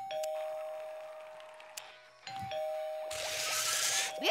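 Two-note doorbell chime ringing 'ding-dong' twice, about two seconds apart, each time a higher note followed by a lower one that fade away. A hiss comes in near the end.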